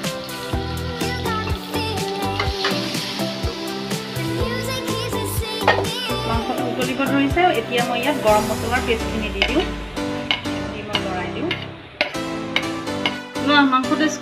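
A metal slotted spatula stirring and scraping curry in a kadai, with the food sizzling as it fries, under background music.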